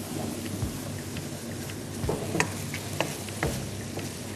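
Diced chicken and onion sizzling in a frying pan as they brown. A wooden spatula stirs them, clicking sharply against the pan now and then.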